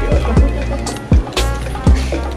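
Background music with a heavy electronic beat: deep kick drums that drop in pitch, over a sustained bass, with short pitched sounds above.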